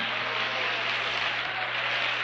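A congregation applauding, a steady, even clapping, over a low electrical hum on the recording.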